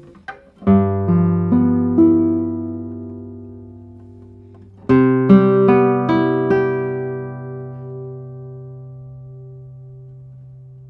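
Darragh O'Connell 2022 "Torres SE 69" classical guitar, spruce top with Indian rosewood back and sides, played solo with the fingers. Two arpeggiated phrases, each a low bass note with four or five plucked notes above it. The second phrase begins about halfway through and is left ringing, fading slowly.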